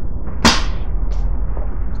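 A comic book swung through the air and set down: one sharp swish about half a second in, over a steady low hum.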